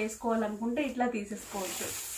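A woman speaking, then a brief high hiss near the end as the cotton saree is lifted and handled: a rustle of the fabric.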